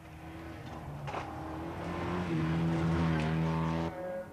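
Rally car engine at high revs on a gravel stage, holding a steady pitch and growing louder as the car approaches. The sound cuts off abruptly just before the end.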